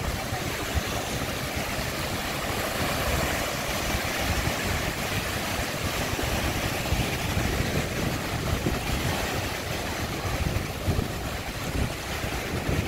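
Small sea waves breaking and washing up onto a sandy beach in a steady surf wash, with wind buffeting the microphone in a fluctuating low rumble.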